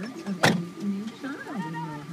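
A car door slams shut once, about half a second in, the loudest sound here, over a person's wavering voice.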